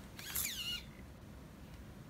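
Analog RC servo motor whining briefly as it swings its arm and pulls back a syringe plunger, the pitch falling as the movement stops, within the first second.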